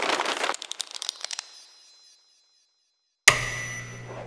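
Sound effects for an animated logo: a crackling, rustling burst with several sharp clicks that fades out over about two seconds. After a second of silence comes a sudden loud hit with ringing tones that slowly die away.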